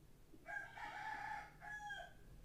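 A faint animal call in two parts: a long call lasting about a second, then a shorter one that falls in pitch at its end.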